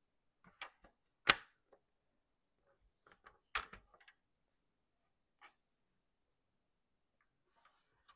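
Sharp plastic clicks and light knocks from a paper trimmer as its clear arm is set down on the paper and handled. The loudest click comes about a second in, a second strong one a couple of seconds later with small ticks around it, and a faint tap near the end.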